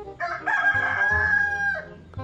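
A rooster crowing once: one long, held call that drops in pitch at the end.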